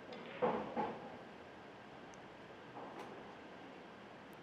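Pool balls knocking twice in quick succession a little under a second in, then a faint click about three seconds in, over low hall ambience.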